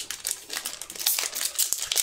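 Foil Magic: The Gathering collector booster pack wrapper crinkling and crackling in the fingers as it is worked open, a rapid, irregular run of small crackles.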